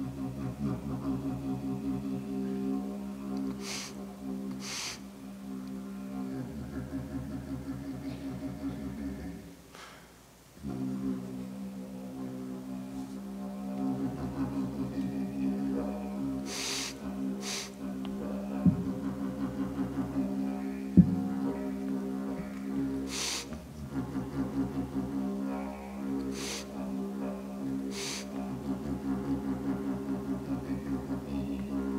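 Didgeridoo played solo: a steady low drone with a rhythmic pulse, breaking off briefly about ten seconds in, with several short hissy bursts over it. Two sharp clicks a couple of seconds apart, just past the middle, are the loudest moments.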